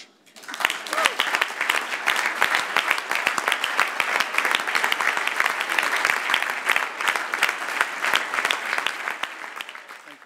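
Crowd applauding: many hands clapping, rising within the first second and holding steady, then dying away near the end.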